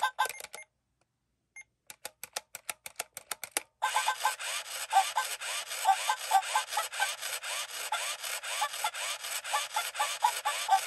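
Sega Poo-Chi robot dog toy playing a tinny electronic song through its small speaker, set off by a touch on its head. A run of quick clicking beats comes first, then about four seconds in a continuous scratchy, rhythmic sound with short chirps takes over.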